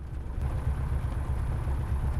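Jodel DR1050 light aircraft's piston engine running at low power while taxiing, a steady low throb.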